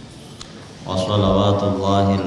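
A man's voice chanting into a microphone in a drawn-out, melodic recitation style, coming in loudly about a second in with long held notes.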